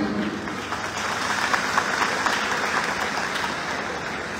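Audience applauding: many hands clapping together in a dense, steady stream that eases off slightly toward the end.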